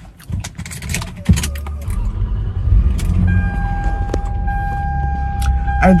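Car keys jangling and clicking, then a little over a second in the car's engine starts with a sudden low rumble and settles into a steady idle. A steady high tone comes in about halfway through.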